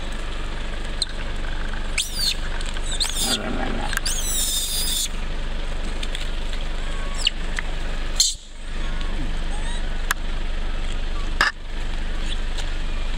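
Long-tailed macaques squealing: short high-pitched calls that bend in pitch, a couple about two and three seconds in and a longer, louder one about four seconds in. Over a steady outdoor background, with two sharp clicks in the second half.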